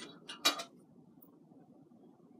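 A couple of faint clicks, then one sharp, short clink about half a second in, like small metal being handled, followed by faint room tone.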